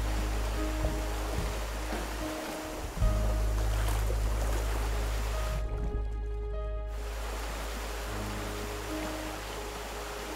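Background music with long held bass notes, laid over the rush of river rapids. About six seconds in, the water noise drops away for about a second as the camera goes under the surface, then returns.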